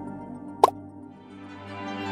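Soft background music fading down, then a single water-drop plop sound effect, short with a quick upward pitch sweep, a little over half a second in. Music swells back in near the end.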